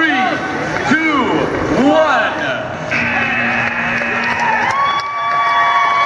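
Crowd shouting a countdown, one shout a second, for the last three seconds of a VEX robotics match. About three seconds in, a steady electronic end-of-match buzzer starts. It changes to a different pitch near the five-second mark and holds on to the end.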